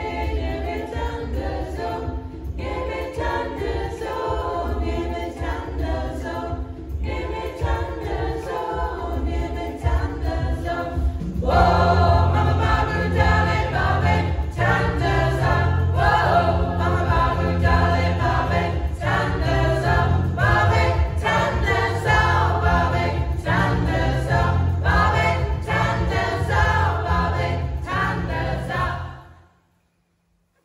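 Community choir of women and men singing together. The singing grows fuller and louder about eleven and a half seconds in, and stops abruptly just before the end.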